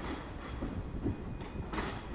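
ScotRail Class 385 electric multiple unit running slowly over the rails and pointwork, a steady low rumble of wheels with faint high-pitched tones above it.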